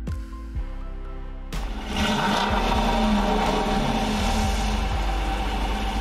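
Dodge Durango R/T's 5.7-litre HEMI V8 exhaust starting up about a second and a half in, its revs flaring briefly and then settling into a steady idle. Background music plays under it.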